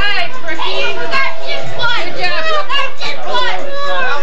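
Loud, overlapping voices of children and adults talking and calling out at once, with no single voice standing out.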